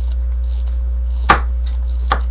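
A single sharp knock a little past halfway, over a steady low electrical hum.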